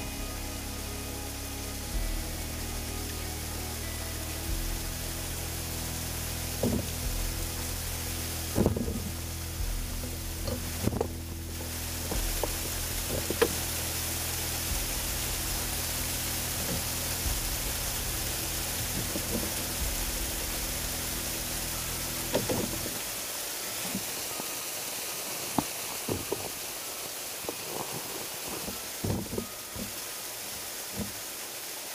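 Background music of long held notes that stops about three-quarters of the way through, over the steady rush of a small waterfall close by. A few short, scattered knocks.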